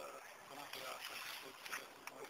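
Faint, indistinct voices of a small group talking quietly.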